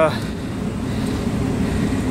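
Steady low droning hum and rumble, typical of rooftop air-conditioning units running.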